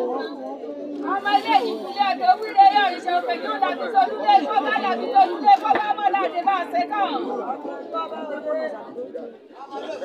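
A man speaking into a hand microphone, his voice amplified, over the chatter of a crowd. The speech is continuous from about a second in until near the end.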